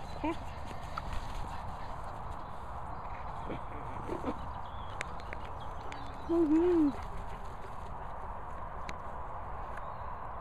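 Handheld phone recording on grass: footsteps and handling noise over a steady outdoor hiss, with a few sharp clicks. A short voice sound and a laugh come about six and a half seconds in.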